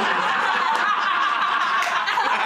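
Several people laughing together without a break, a woman's laughter among them.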